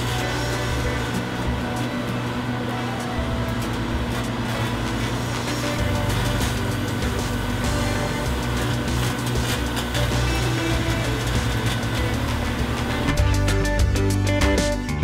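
Microwave oven running with a steady hum, under background music. About a second before the end the hum gives way to guitar music.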